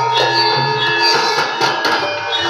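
Javanese gamelan music playing: layered, sustained ringing metal tones over low steady notes, with a few sharp percussion strokes in the second half.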